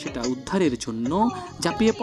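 A voice singing with instrumental music behind it, in long, gliding notes.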